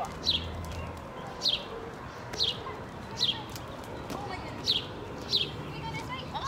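A bird calling repeatedly: a short, high, down-slurred note roughly once a second, over a steady outdoor background hum.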